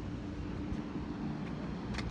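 Steady low hum and rumble of city background, with a constant tone held throughout.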